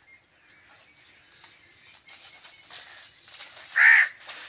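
A bird calling: a few faint short calls in the second half, then one loud short call just before the end.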